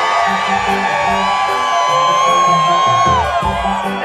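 Live reggae band playing, with one long held high note that falls away about three seconds in, over a crowd cheering and whooping in answer to the call-and-response.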